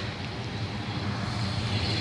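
Street traffic: a steady low rumble of cars driving past, growing a little louder near the end.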